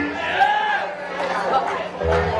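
Voices chattering in a lull in a live band's playing, with a pitched voice-like line bending up and down about half a second in; the band's bass comes back in loudly at the very end.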